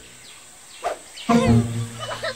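Short animal-like vocal calls with bending pitch: a brief one a little under a second in, then a longer one about a second and a half in.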